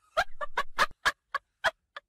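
A woman laughing: a quick run of short 'ha' syllables that slows and trails off just before the end.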